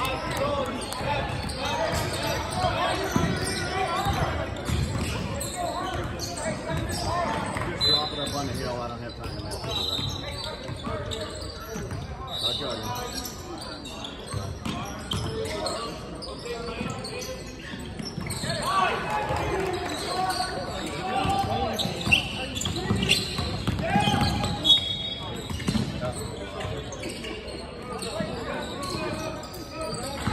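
A basketball bouncing on a hardwood court amid indistinct players' voices and calls, echoing in a large gym hall.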